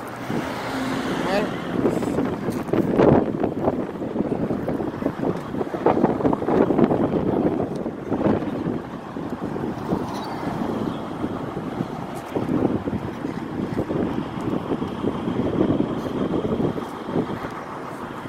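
Outdoor ambience of people talking, with vehicles passing on the road and wind buffeting the microphone.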